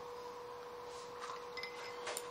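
A faint steady tone, with a few short, high, ringing notes between about one and two seconds in.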